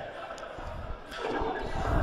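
Faint open-air football stadium ambience, with a few low thuds in the second half.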